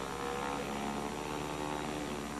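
Handheld power carving tool cutting into marble, a steady mechanical drone made of several held tones.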